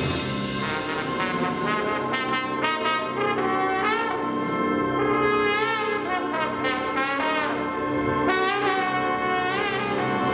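Trombone solo over a concert band accompaniment, the trombone line wavering in pitch with a wide vibrato from about four seconds in.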